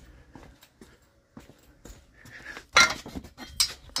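Metal items being handled and moved, with light scattered clicks and then a loud clank about three seconds in, followed shortly by a sharp clink.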